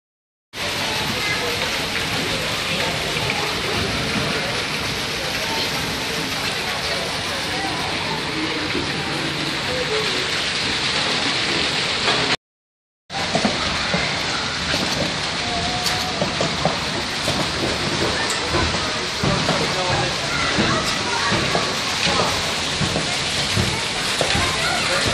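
Water pouring and splashing steadily into a water-play exhibit's trough, under the chatter of people nearby. The sound cuts out suddenly twice, briefly near the start and again about halfway through.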